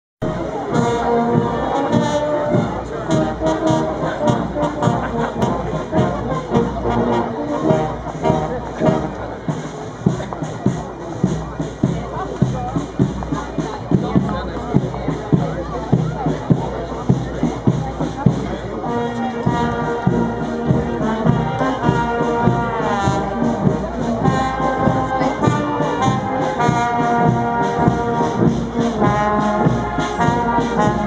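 Brass band (silver band of cornets, euphoniums and tubas) playing a march with a steady drum beat. The brass melody comes through more clearly from a little past the halfway point as the band draws near.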